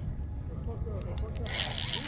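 Low wind rumble, then about one and a half seconds in a steady high hissing rasp starts: a spinning reel's drag giving line to a hooked heavy channel catfish that is pulling hard.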